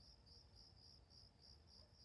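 Faint cricket chirping steadily at night, about three and a half chirps a second.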